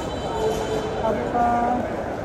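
Crowd chatter in a large airport terminal hall: many overlapping voices over a steady hum of the hall, with one nearby voice standing out briefly a little past halfway.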